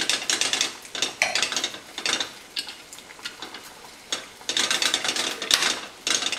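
Metal wire whisk beating quickly against a ceramic bowl, whisking olive oil into an egg and lemon dressing base. The rattling strokes ease off in the middle and come back loudest near the end.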